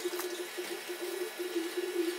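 Steady background hiss with a faint wavering hum and no distinct events.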